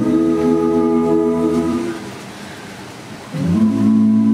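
Mixed a cappella vocal group holding a sustained chord in close harmony, which fades out about two seconds in. After a short quieter gap, a new chord slides up into place and holds.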